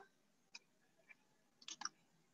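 Near silence over a video call, broken by a few faint short clicks: one about half a second in, one around a second in, and a close pair near the end.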